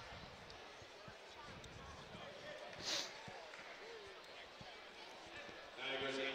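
Faint arena background during a dead ball: a low crowd murmur with scattered soft basketball bounces on the hardwood court, and a brief hiss about three seconds in.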